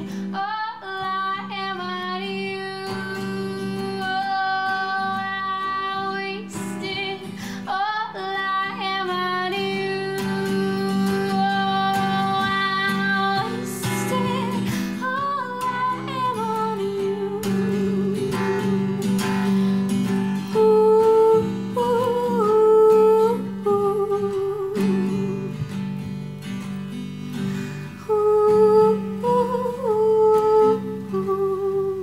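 A woman singing over a strummed classical guitar, her voice holding long notes above the steady guitar chords.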